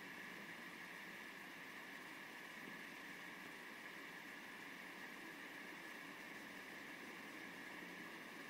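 Near silence: a faint, steady hiss of room tone with no distinct events.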